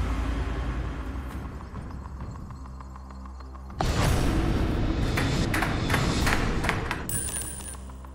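Game-show drop sequence on the Tipping Point machine: a deep rumbling sound effect with a falling tone. About four seconds in comes a sudden loud hit, then a run of sharp clicks and rattles from the counter falling through the machine.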